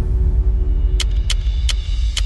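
Typing sound effect: sharp key clicks about three a second, starting about a second in, over a steady deep rumbling drone.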